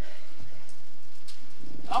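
Faint rustle of Bible pages being turned, with a few soft ticks.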